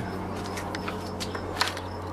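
A few light clicks of a steel screwdriver being fitted into the slot of an outboard's lower-unit drain plug, over a steady low hum.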